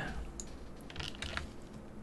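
A few scattered, quiet keystrokes on a computer keyboard.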